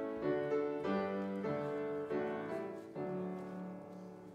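Piano playing the introduction to a hymn, with chords struck every half second or so. The last chord fades out near the end.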